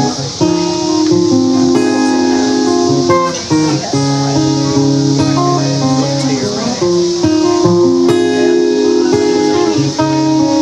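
Solo acoustic guitar playing an instrumental intro: ringing chords that change every second or so.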